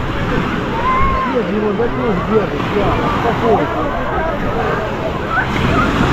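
Crowded beach: many overlapping voices of bathers, with calls and shouts, over the steady wash of small waves breaking at the shore.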